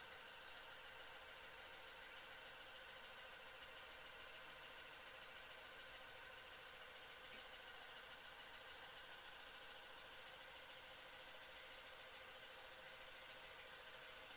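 LEGO L motor driving a pneumatic pump, running steadily as a faint whir with a fast, even ripple while the arm is worked by the valve switches.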